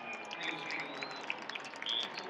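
Large stadium crowd: a busy din of many voices with scattered short shouts and whistles.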